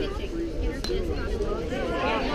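Background chatter of spectators' voices, with one sharp click a little under a second in.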